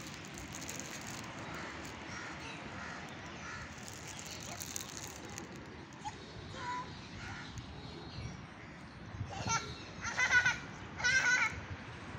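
Steady outdoor background with faint scattered bird calls, then a crow cawing three times near the end, each caw loud and short.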